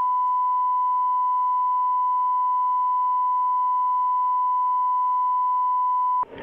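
Steady 1 kHz line-up test tone, one unbroken pure pitch at constant level. It is the reference tone of a broadcast sound-check loop, sent to let the programme feed's audio levels be set.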